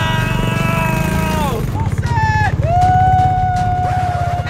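Long drawn-out shouts of "oh" and "whoa", two held cries with a short one between them, over the low rumble and rattle of small off-road vehicles bouncing along a rough trail.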